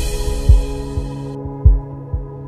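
Background music: a held, sustained chord with deep, heartbeat-like thumps underneath, four of them across two seconds. The bright high layer of the music drops out about two-thirds of the way through.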